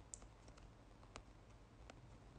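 Faint clicks from fingers tapping a phone's touchscreen, about three in two seconds, over near-silent room tone.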